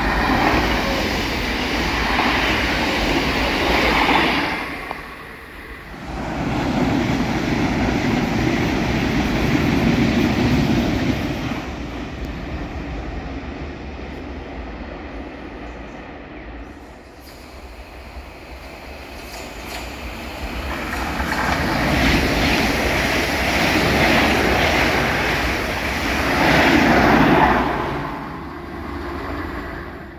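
Passenger multiple-unit trains running through a station at speed, heard as several separate passes that swell and fade, with wheels on rail. The loudest stretches come at the start, around ten seconds in, and again from about 22 to 28 seconds.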